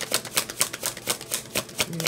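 A tarot deck being shuffled by hand: a quick, uneven run of sharp card clicks and slaps, several a second.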